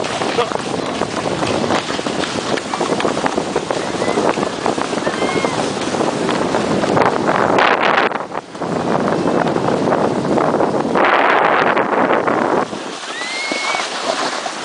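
Loud, steady rush of wind buffeting the microphone and ski runners hissing over snow during a fast downhill slide on a homemade ski-sled. It drops out briefly a little past the middle and is quieter near the end as the sled slows.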